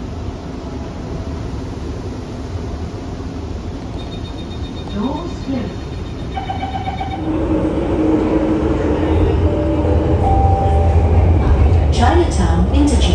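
Inside a Singapore MRT subway carriage: the train's running noise, a steady low rumble, growing louder about eight seconds in as a steady whine joins it.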